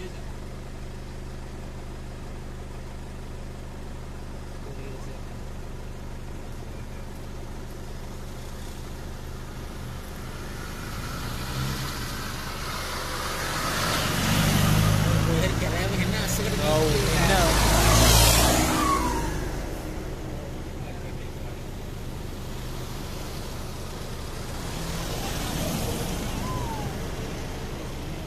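Safari jeep engines idling, with a vehicle driving up close and passing, growing louder and shifting in pitch from about halfway through and peaking around two-thirds of the way in, before the steady idling hum carries on.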